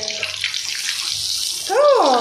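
A pea-stuffed kochuri (koraishutir kochuri) deep-frying in hot oil in a kadai, a steady high sizzle. Near the end a voice calls out, rising and then falling in pitch.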